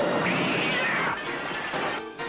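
A loud, shrill screech that rises and falls over about a second, then trails off.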